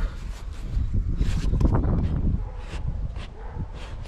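Wind rumbling on the microphone, with a series of light knocks and rustles as a hand works the round hatch cover of a plastic kayak's rear dry-storage compartment.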